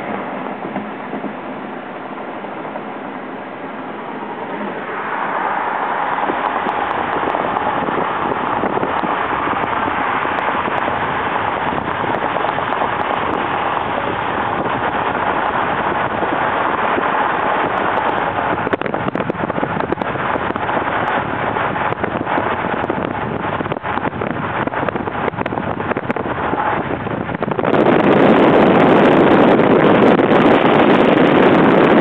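Steady road and wind noise of a moving car, growing louder about five seconds in. Near the end a heavier, lower rush of wind on the microphone takes over.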